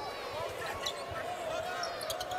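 A basketball being dribbled on a hardwood court, heard faintly, with distant voices in the arena.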